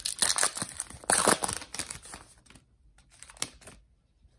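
A 2021 Topps Heritage baseball card pack's wrapper being torn open and crinkled by hand: a run of rustling and tearing that stops about two and a half seconds in, followed by a few light taps.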